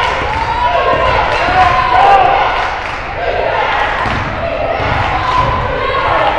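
Basketball being dribbled on a hardwood gym floor, with the voices and shouts of players and spectators around it.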